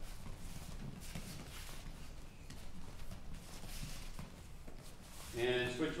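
Faint, irregular soft thuds and shuffles of barefoot footwork on gym mats, with gloves moving, as boxers drill slipping punches. A man's voice calls out near the end.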